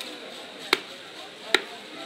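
Large knife chopping through rohu fish flesh into a wooden chopping block: two sharp chops about a second apart.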